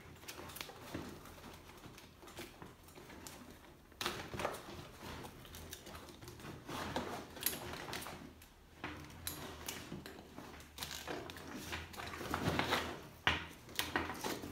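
Handling of a bike seat pack's nylon webbing straps and plastic buckles: quiet rustling and scattered small clicks as the straps are threaded around the seat post and pulled tight.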